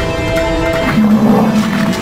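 Dramatic background music of held notes: a higher sustained note in the first half, then a lower held note coming in strongly about halfway through.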